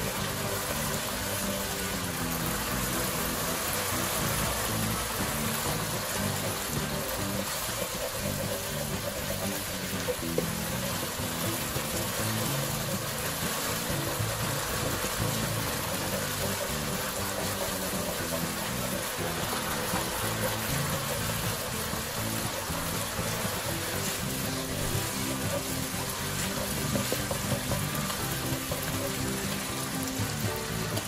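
Background music over a steady sizzle of sambal paste frying in oil in a wok.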